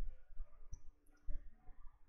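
A quiet pause with low room noise and a few faint, scattered soft clicks.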